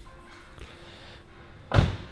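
Mercedes-Benz CLK350 convertible door being shut, one solid slam near the end, over faint background music.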